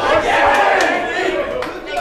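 Ringside crowd shouting and yelling, many voices overlapping, with a few sharp smacks among them.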